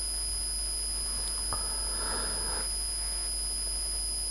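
Steady electrical hum and hiss of the recording chain, with a thin high-pitched whine, and a faint click about a second and a half in.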